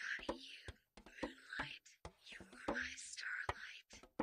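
Close-up ASMR whispering: a voice reading aloud in a whisper, in short breathy phrases with crisp clicks of consonants and brief pauses between them.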